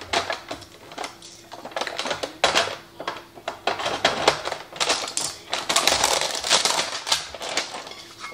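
Crinkling and rustling of packaging being cut and pulled off a stack of new ceramic nonstick frying pans, in quick irregular crackles, with light knocks as the pans are handled.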